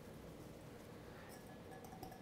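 Near silence: room tone, with a few faint ticks in the second half.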